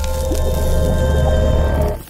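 Intro music sting for an animated channel logo: a deep bass rumble under held tones and a wash of hiss, dropping away sharply at the end.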